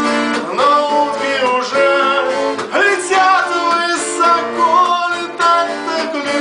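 A man singing to a strummed twelve-string acoustic guitar.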